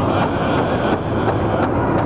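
Powwow drum group striking a large shared drum in a steady beat, with voices singing, the whole washed in heavy echo.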